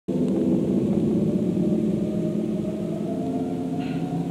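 Sustained low drone of several steady tones from the film's soundtrack, starting abruptly and holding steady, with a short hiss near the end.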